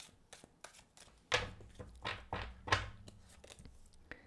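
Tarot cards being shuffled and handled over a tabletop: a run of quick card slaps and rustles, loudest in the middle, with soft thuds as cards meet the table.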